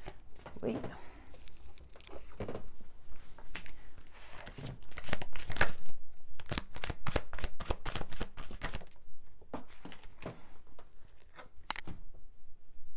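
A tarot deck being shuffled by hand, the cards rustling and slapping together in quick, irregular strokes that thin out over the last few seconds.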